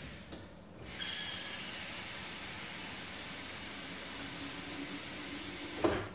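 Kitchen tap running water into the Bodum Pebo's glass lower pot, a steady rush that starts about a second in and shuts off just before the end with a brief knock.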